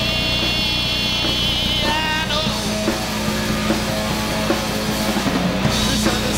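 Loud live hard rock band playing, with a man singing a long wavering note over the first couple of seconds.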